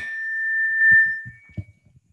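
A single steady high-pitched tone that swells for about a second and then fades out, with a few faint low knocks near the end.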